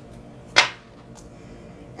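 A single sharp snap of a tarot card being pulled from the deck about half a second in, with low room tone around it.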